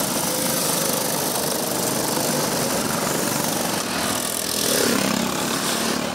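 Several go-kart engines running at racing speed on the track, a dense steady buzz, briefly louder about five seconds in as karts pass close.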